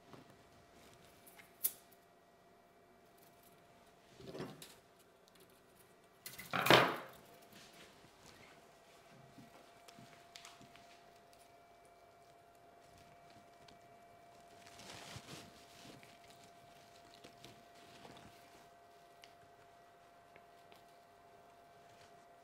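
Quiet handling sounds of bonsai wire being wrapped onto a Japanese black pine's branches: light clicks, scrapes and rustles of needles, with one louder rustle about seven seconds in. A faint steady hum runs underneath.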